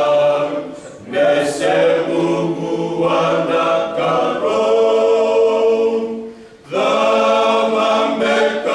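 Fijian men's choir singing a cappella in harmony, holding long chords, with short breaks for breath about a second in and again after about six seconds.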